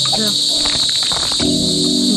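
Steady, unbroken chorus of night insects, crickets, shrilling high and continuous.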